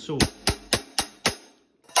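Zildjian hi-hat cymbals struck in short, even strokes, about four a second and growing a little weaker, stopping about a second and a half in.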